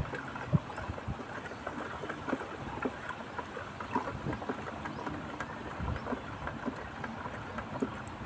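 A wooden stick stirring sugar and water in a plastic bucket: liquid sloshing, with irregular light knocks and clicks of the stick against the bucket.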